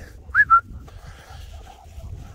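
A person whistling two short notes to call dogs back, about half a second in: a quick rising note, then a slightly lower level one.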